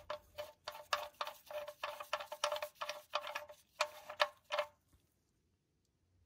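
Steel drain plug being unscrewed by hand from the pickup's oil pan, its threads giving rapid, sharp metallic clicks with a faint ring, about four a second, in the pan's damaged drain-hole threads. The clicking stops about a second before the end.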